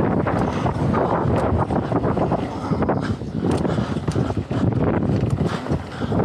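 Mountain bike riding fast over a hard-packed dirt trail: steady tyre and wind noise on the microphone, with frequent short rattles and clacks from the bike over the bumps and jumps.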